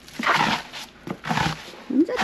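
A small hand pan scraping and scooping snow off a paved path, two short scrapes about half a second and a second and a half in.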